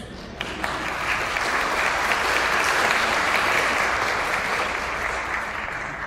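Congregation applauding, swelling over the first couple of seconds and then tapering off near the end.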